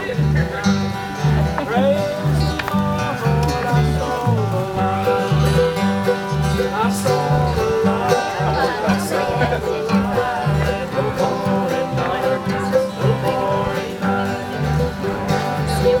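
Acoustic bluegrass jam: an upright bass plucks a steady beat of about two notes a second under strummed and picked acoustic guitars.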